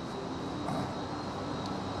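Steady background hum of factory plant machinery and ventilation, with a faint, thin high whine running through it.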